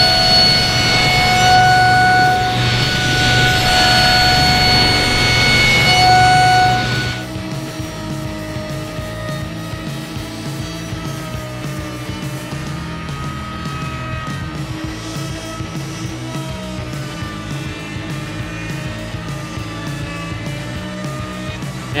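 A table saw running and cutting through a board for about the first seven seconds, a loud steady whine over background music. When the saw stops, only the background music plays.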